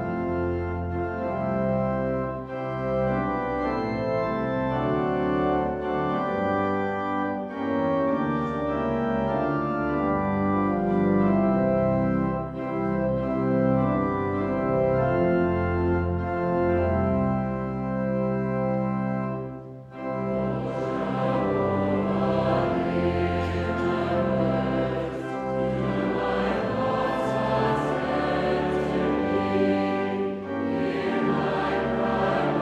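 Church organ playing the introduction to a congregational psalter hymn in steady held chords. About two-thirds of the way through it breaks off briefly, then the congregation starts singing with the organ.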